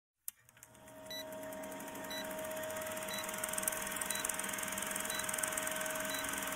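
Old-film countdown-leader sound effect: a steady projector whir with a fast rattle and hiss, and a short high beep about once a second. It fades in over the first second.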